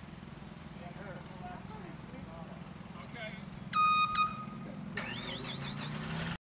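Heavy machine's engine idling steadily under faint voices. About four seconds in, a horn beeps loudly twice, a long beep then a short one. In the last second a warbling high tone comes in.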